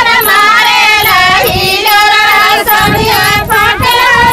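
Several high-pitched female voices singing together.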